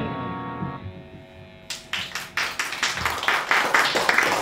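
The final chord on an 8-string electric bass rings out and fades away within about the first second. Near the middle, a quick run of sharp taps starts, about four a second.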